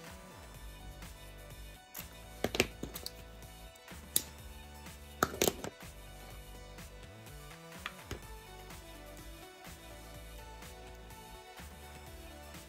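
Background music, with a handful of sharp clicks between about two and six seconds in and one more near eight seconds, from scissors snipping off excess ribbon.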